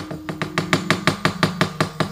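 Rapid, even knocking of a wooden cempala mallet on the wooden puppet chest of a wayang kulit dalang, about seven or eight knocks a second, with a steady low held tone underneath. This is the knocking pattern that leads into a sung suluk.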